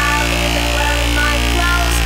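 Electronic music: a deep bass note held through the passage under steady synth tones, with short higher notes dotted above and no drum hits.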